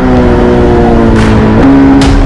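Motorcycle engine running as the bike rides past, its pitch falling steadily, then jumping up near the end.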